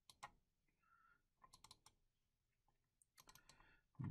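Near silence with faint computer mouse clicks in three quick clusters: near the start, in the middle and near the end.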